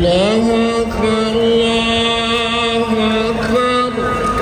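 A man's voice chanting one long melodic note: it glides up at the start, holds steady, and steps up near the end.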